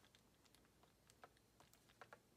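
Near silence, with a few faint, scattered light clicks of a makeup brush and eyeshadow palette being handled.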